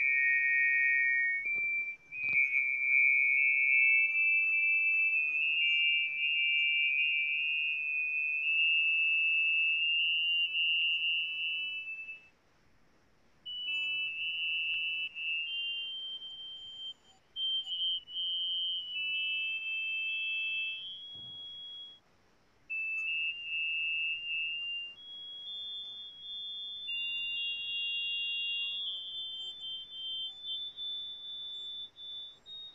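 Data sonification played back as a sequence of pure, high electronic tones. Each note steps to a new pitch, the notes sometimes overlap, and the line climbs gradually higher over the stretch. The sequence breaks off briefly twice, about 12 and 22 seconds in.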